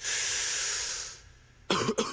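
A loud hiss lasting about a second, fading out, followed by a brief quiet and then the song's music and vocals coming back in near the end.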